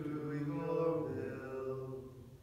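A single male cantor chanting a phrase of the responsorial psalm in long held notes, the pitch stepping down through the phrase and the last note fading out near the end.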